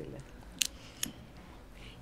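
Two sharp clicks about half a second apart, the first louder, over low room tone.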